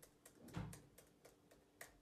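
Faint laptop keyboard typing: irregular key clicks, several a second, with a duller, stronger knock about half a second in.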